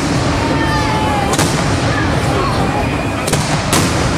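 Crowd chatter with sharp bangs cutting through: one about a second and a half in and two in quick succession near the end.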